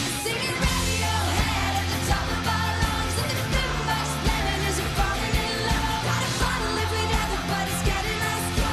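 Live pop-rock band playing: a woman singing lead over a drum kit, electric guitar and keyboards, with a steady beat.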